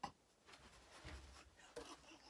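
Faint rustling and a few small clicks from a person shifting and getting up off a padded piano bench, with a sharp click at the start.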